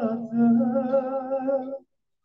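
A man singing long held notes. One note ends just after the start, and a second sustained note with a slow, wavering vibrato follows, breaking off shortly before the end.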